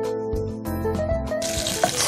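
Sliced onions hitting hot oil in a frying pan: a loud, even sizzle starts about one and a half seconds in, over background music.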